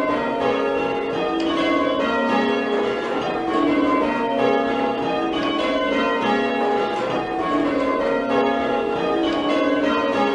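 A ring of six church bells being rung full-circle in change ringing, heard from the ringing room below. The bells strike one after another in a steady, even rhythm, their tones overlapping and ringing on.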